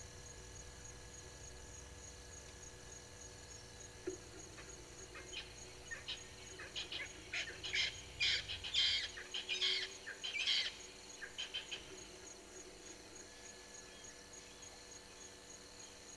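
A bird calling: a run of rapid high notes that starts about four seconds in, grows louder toward the middle and fades out by about twelve seconds, over a steady insect trill.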